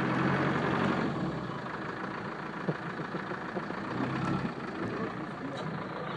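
4x4 engine idling with a steady low hum.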